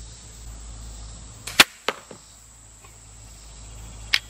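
10-point Viper S400 crossbow firing a bolt: a sharp crack of the release about a second and a half in, a second snap just after it, and a faint knock about half a second later as the bolt strikes the deer target.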